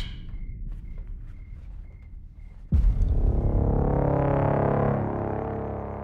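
Trailer score: a low rumble with faint, evenly repeated high chirps, then about three seconds in a sudden heavy hit that opens into a dense, sustained droning tone, slowly fading.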